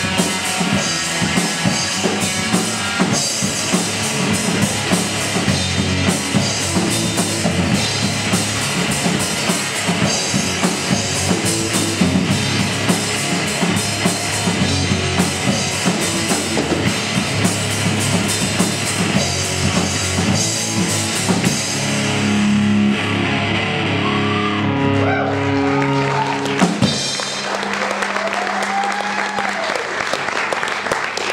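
Live rock trio playing: distorted electric guitar, electric bass and a Yamaha drum kit driving a steady beat. About two-thirds of the way through the drumbeat stops and the guitar and bass hold long, sliding notes, then a single loud hit shortly before the end as the song ends with the guitar ringing out.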